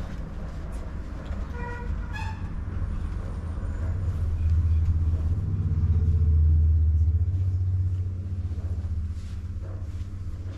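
A road vehicle going past, its low rumble swelling to the loudest point around six to seven seconds in and then fading. Two short horn beeps at different pitches sound about two seconds in.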